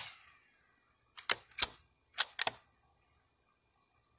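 The echo of a .22 rifle shot dies away. Then comes a quick series of about six sharp mechanical clicks in two clusters, from the rifle's action being worked between shots.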